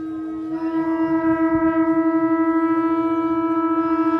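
Conch shell (shankha) blown as one long held note, swelling louder about half a second in and wavering quickly in loudness.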